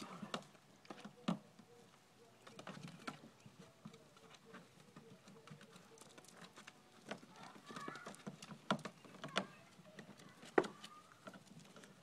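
Labrador puppies' paws pattering and splashing faintly in shallow water in a plastic kiddie pool, with scattered light taps and clicks.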